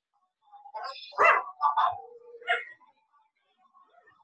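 A dog barking about three times in quick succession, loudest on the first bark.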